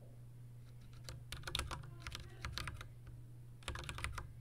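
Computer keyboard keys being typed in short runs of clicks, from about a second in until nearly three seconds, then another quick run near the end.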